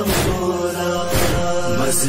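Wordless chant of men's voices holding a sustained drone between the sung lines of an Urdu noha (Shia lament), with a soft beat about once a second.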